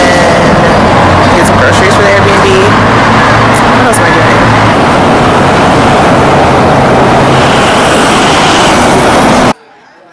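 Loud, dense street traffic noise at a city intersection, with cars passing and a steady low engine hum from a vehicle through the middle. Faint voices sit underneath. It cuts off suddenly near the end.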